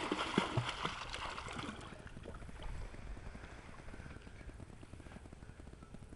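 Faint water lapping and gurgling around the hull of a drifting boat, with a few soft knocks in the first second or two.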